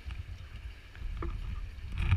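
Ambient noise aboard a dive boat: a low, uneven rumble with a faint click about a second and a quarter in.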